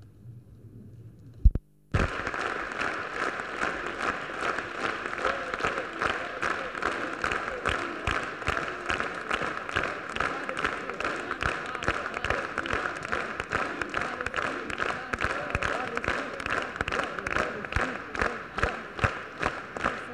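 A short quiet gap broken by a sharp click, then a large audience applauding with dense, steady clapping.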